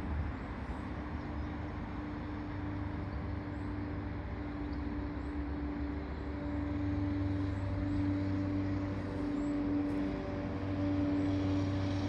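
Outboard engine of a small motorboat running steadily on the river, a constant drone with a held tone over a low rumble, growing a little louder in the second half.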